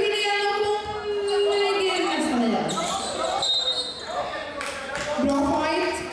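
Basketball bouncing on a sports-hall floor, with a few sharp knocks in the second half. A voice gives a long, drawn-out call that drops in pitch after about two seconds, and a shorter call comes near the end.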